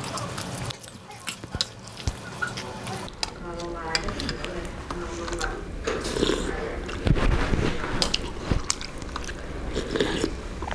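Metal fork and spoon scraping and clinking against a wok while instant noodles in broth are stirred, then noodles slurped from the spoon and chewed.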